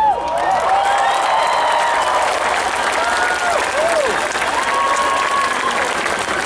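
Large concert crowd clapping and cheering just after a rock song ends, with single voices whooping in rising-and-falling calls over the steady clapping.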